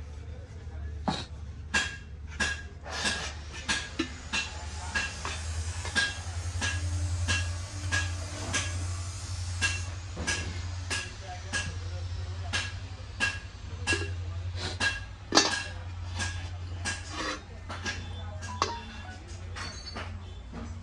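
Brass water container and its lid clinking and knocking as they are handled, many irregular light taps each followed by a brief metallic ring, over a steady low hum.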